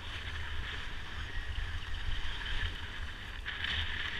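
Skis hissing and scraping over groomed snow through turns, with wind buffeting the action camera's microphone as a low rumble; the scraping swells sharply near the end.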